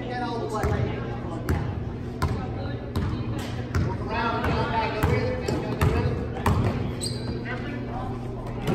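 A basketball being dribbled on a gym court, a bounce every half second to second, amid voices of players and spectators.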